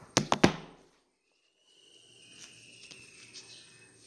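A few sharp knocks and rubbing sounds as a handheld phone is handled close to its microphone, in the first half second; then the sound cuts off suddenly into silence. After that comes faint room noise with a faint thin whistle that slides slightly downward.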